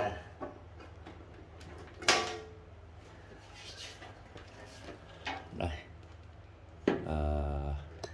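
Metal top cover of a Denon PMA-390IV integrated amplifier being lifted off the chassis and handled: a sharp metallic clunk about two seconds in, then lighter knocks and scrapes.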